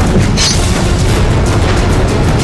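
Loud trailer soundtrack: dense music with deep booming hits, and a brief hissing swell about half a second in.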